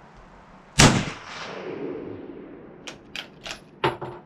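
A single .303 rifle shot from a Lee-Enfield No.4 Mk1, fired about a second in, with a ringing echo that dies away over a second or so. Near the end come four quick metallic clicks of the bolt being worked to eject and chamber a round.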